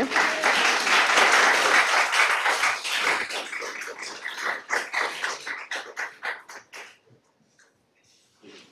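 Audience applauding: many hands clapping together, thinning to a few scattered claps and stopping about seven seconds in.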